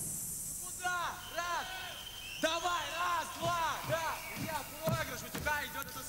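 The band's music stops at the start, and then voices call out again and again in short rising-and-falling hoots, about two a second, with a few knocks among them.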